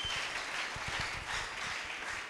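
Congregation applauding: many hands clapping at once, fairly quiet and steady.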